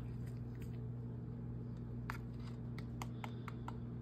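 Serving spoon scooping cracker-topped casserole out of a ceramic baking dish and into a bowl: a scatter of light clicks, scrapes and crackles from the spoon against the dish and the crackers breaking, over a steady low hum.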